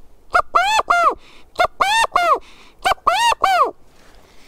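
Hand-held rubber-band-reed quail call blown through cupped hands, giving the California valley quail's three-note "chi-ca-go" call three times, each call a short note followed by two longer notes that rise and fall in pitch.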